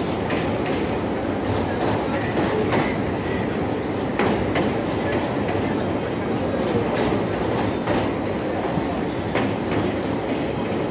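Indian Railways passenger train running at speed over a river bridge, heard from inside the coach by the window: a steady rumble of wheels on rail, with scattered sharp clicks at irregular spacing.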